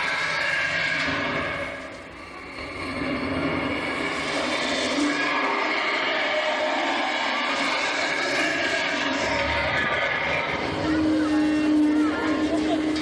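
Indistinct voices over the steady running noise of an open-sided tour tram.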